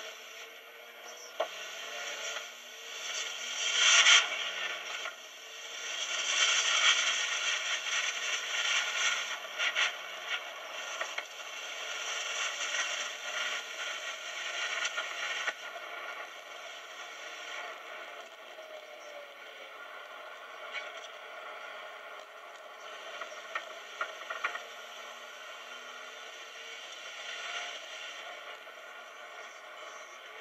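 Cabin noise of a Holden Rodeo ute with a turbocharged C20LET four-cylinder engine being driven on a race track: engine, wind and road noise that grows louder a few seconds in and through the first half, then eases to a lower steady level. It sounds thin, with no low rumble.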